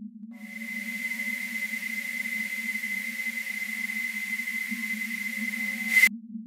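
A stovetop kettle whistling: one steady high-pitched tone with a hiss of steam. It starts shortly after the beginning, grows a little louder, and cuts off abruptly at the end. A low steady drone runs underneath.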